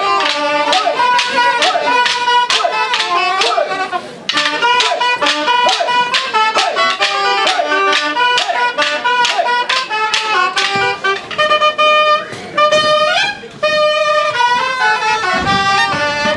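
Provençal pipe and tabor (galoubet and tambourin) playing a lively folk dance tune: a high, shrill pipe melody over a steady beat of sharp drum strikes. About eleven seconds in the tune changes to longer held notes.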